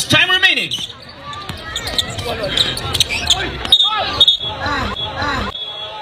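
Basketball game sounds: a ball bouncing on the court amid shouting voices of players and spectators.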